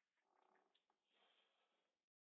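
Near silence: very faint, indistinct room sound.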